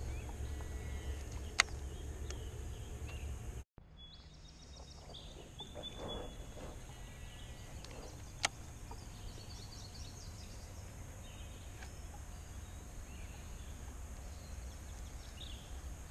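Quiet outdoor ambience by a lake: a steady low rumble, faint bird calls, and two sharp clicks, one near the start and one about eight seconds in. The sound cuts out for a moment a little under four seconds in.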